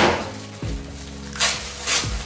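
Clear plastic packaging bag crinkling as it is pulled open, with the sharpest rustle about a second and a half in, over soft background music.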